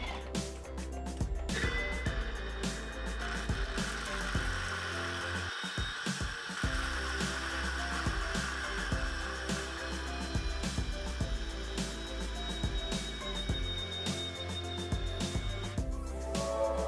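Thermomix food processor motor running at speed, its blades grinding blanched almonds dropped in through the lid opening, with the almonds clattering against the blades. The grinding starts about two seconds in and stops just before the end.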